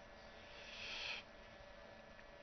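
A person's breath close to the microphone: one short hiss, building for about half a second and cutting off sharply, over a faint steady electrical hum.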